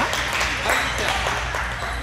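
Table tennis balls clicking off paddles and tables in quick, irregular succession, over a steady low hum of the hall.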